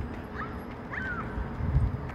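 Bird chirping, two short chirps in the first second over a steady outdoor background, then a low thump near the end.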